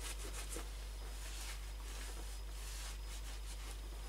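Cloth rubbing leather oil into an old leather jackboot: a series of soft, irregular wiping strokes over a steady low hum.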